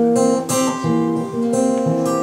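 Acoustic guitar being strummed, with a few strokes and the chords ringing on between them.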